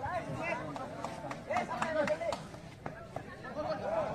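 Crowd of spectators at a distance: scattered voices and shouts over general chatter, fairly quiet, with a few faint sharp knocks.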